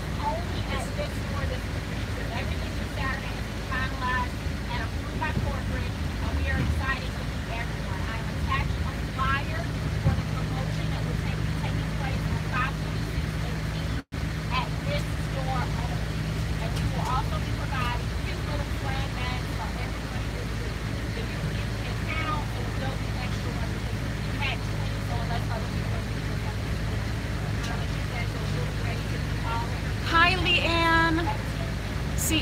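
Steady low drone of a moving bus, with engine and road noise, under scattered background chatter of passengers. The sound cuts out for an instant about halfway through.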